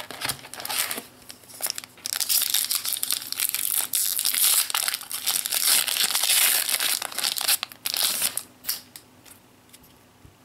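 Foil trading-card booster pack wrapper being torn open and crinkled in the hands: a few light rustles at first, then about six seconds of dense crinkling that dies down near the end.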